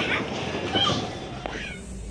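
Short high-pitched shouts and squeals from people, with a noisy background that fades away toward the end.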